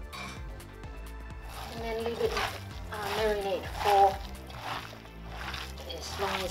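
Background music with a voice over it, and the wet squelching of a hand mixing raw minced pork with seasoning in a steel bowl.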